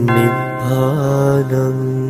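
Buddhist devotional chant sung over music: a voice holds long notes, a new phrase beginning at the start and wavering briefly in pitch about halfway through.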